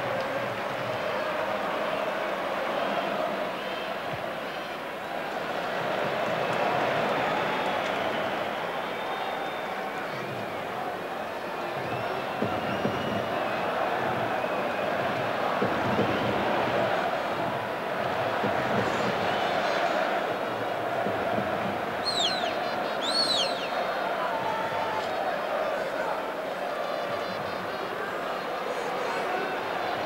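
Crowd noise in a packed football stadium: thousands of fans chanting and shouting in a steady din. Two short, shrill whistles cut through about three quarters of the way in.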